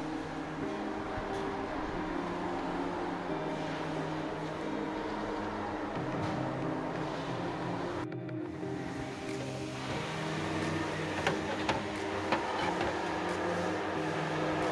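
Background music with sustained tones that shift like chords, breaking off briefly about eight seconds in. A few sharp clicks sound in the last few seconds.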